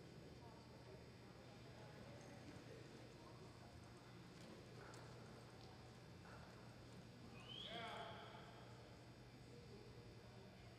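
Near-silent arena with faint hoof steps of a horse walking on soft dirt, and a horse whinnying once, faintly, about eight seconds in: a short call that rises and then falls with a waver.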